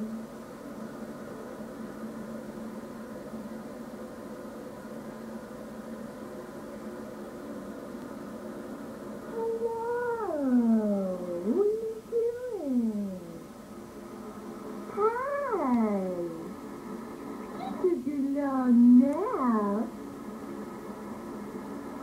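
Three long, drawn-out wordless vocal calls, each sliding up and then falling in pitch, in the second half. A steady hum of old videotape runs underneath throughout.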